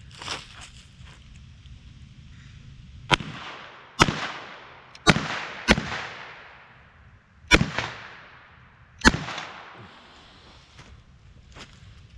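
Six gunshots from a small H&R revolver fired at close range into a watermelon. The shots come at uneven spacing over about six seconds, each dying away quickly.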